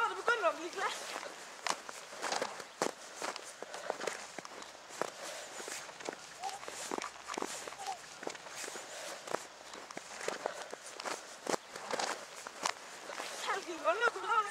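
Footsteps in snow: irregular crunching steps along a snow-covered path, with a voice calling out briefly at the start and again near the end.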